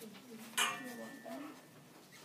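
Indistinct voices in a classroom, with a short spoken phrase about half a second in.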